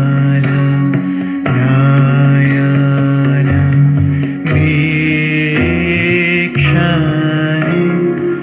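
A male voice sings a devotional hymn in long, held notes with vibrato over sustained electronic keyboard chords.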